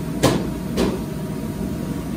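Two sharp knocks about half a second apart, the first louder, over a steady low rumble of commercial kitchen equipment.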